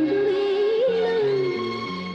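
Malayalam film song: a female voice sings one long, wavering melodic line over a stepping bass accompaniment.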